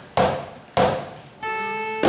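Live ensemble song opening: two sharp percussion knocks a little over half a second apart, keeping an even beat, then a held chord of sustained notes begins about a second and a half in.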